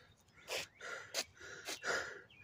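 A man breathing hard through his mouth: about five short, quick, breathy gasps.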